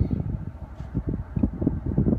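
2012 Ford F-150's 5.0 L V8 running at idle just after start-up, a low uneven rumble heard from inside the cab.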